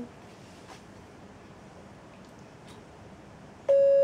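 Quiet room tone, then near the end a loud, steady single-pitch beep starts abruptly: a listening-test tone for conditioned play audiometry, to which the child answers by putting a peg in the board.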